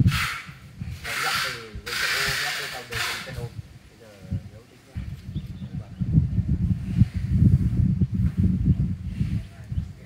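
Outdoor wind buffeting the microphone as a low, uneven rumble, strongest in the second half, after several short bursts of hiss in the first few seconds.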